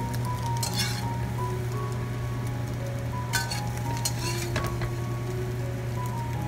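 A spatula scraping across a stainless steel pan and clinking against a white ceramic plate several times as scrambled eggs are slid out of the pan onto the plate, with a light sizzle from the hot pan.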